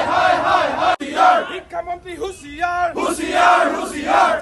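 A crowd of men shouting protest slogans together in loud, repeated chants.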